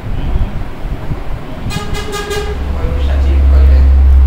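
A vehicle horn sounds a few quick toots a little before the middle, then a deep engine rumble builds up and stays loud, as of a vehicle passing close by.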